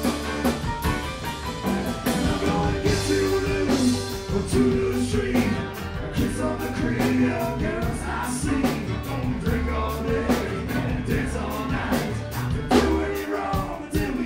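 A live roots-rock band playing, with a man singing lead over accordion, electric keyboard, bass and drum kit.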